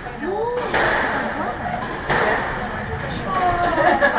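Squash ball hit by rackets and smacking off the court walls during a rally, two sharp loud hits about a second apart with the court ringing after each.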